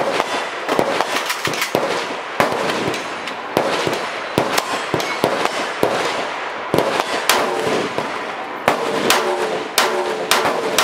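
Rifle shots at an outdoor range: about twenty reports at irregular intervals, mostly under a second apart, each with a short echo. They come from a Lithgow Arms F90 bullpup rifle (5.56 mm) fired from the shoulder and from other guns on the firing line, some shots louder and some fainter.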